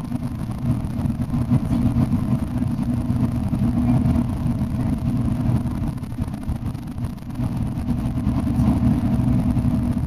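Steady low drone of a long-distance coach's engine and tyres heard inside the cabin while cruising at highway speed.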